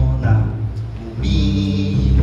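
Upright double bass played pizzicato, deep plucked notes in a groove, with a voice holding a long sung note over it from about a second in.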